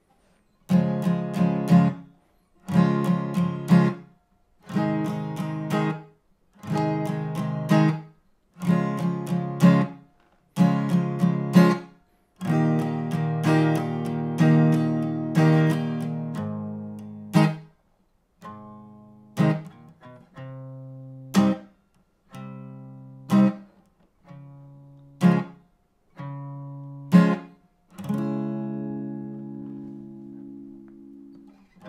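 Takamine EG355SC acoustic guitar with a capo on the first fret, strummed slowly through the bridge chords C, G, C, D, then G, B minor, C, C minor. In the first part each chord gets a short strumming pattern, followed by a brief silence. Later the chords are struck singly every couple of seconds and left to ring, the last one held.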